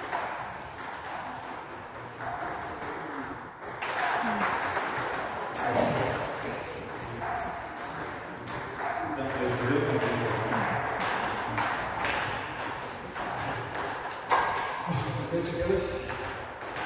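Table tennis ball ticking off rubber bats and the table in a doubles rally: an irregular series of sharp, light clicks.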